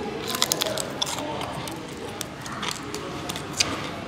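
Biting and chewing crispy fried chicken batter: a run of sharp, irregular crunching crackles.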